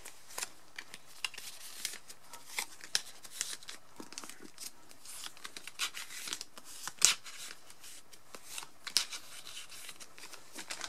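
Photocards handled and slid into clear plastic binder sleeves: a steady run of small rustles, crinkles and clicks of card against plastic, with one sharper click about seven seconds in.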